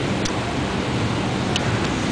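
Steady rushing background noise of an airport terminal, with a few faint clicks.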